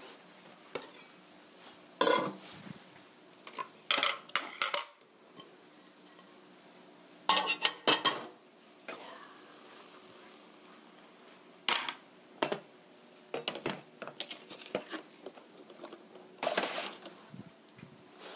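Wooden spoon knocking and scraping against a nonstick frying pan of cooked stir-fry, with the pan itself clattering as it is handled, in irregular bursts of a few knocks at a time.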